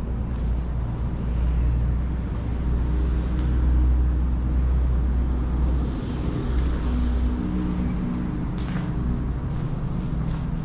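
Steady low rumble of distant road traffic, heaviest in the first half, with a faint engine hum in the second half.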